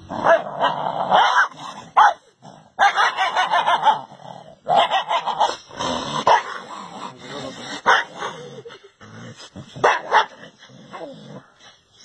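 A dog barking and yipping in several bouts, with short pauses between them.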